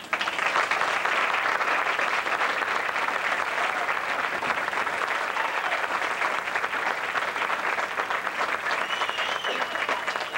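Audience applauding, starting suddenly and holding steady, with a voice coming in near the end.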